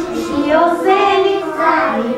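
A group of young preschool children singing a song together, their voices holding and shifting between sustained notes.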